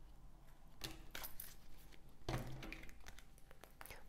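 Tarot cards being handled and set down on a table: soft clicks and rustles, in a cluster about a second in and again a little past two seconds.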